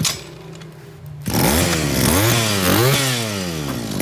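Zenoah GE2KC small two-stroke brush cutter engine idling low, then revved about a second in. Its speed rises and falls twice with throttle blips and settles back toward the end.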